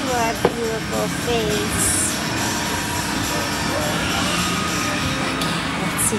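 Busy arcade-room din: a steady wash of background voices and music, with a few short falling tones and a click in the first second or so.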